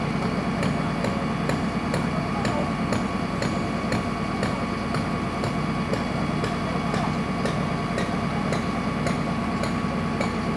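A fire engine's engine idling with a steady low drone, with a sharp, regular ticking about twice a second over it.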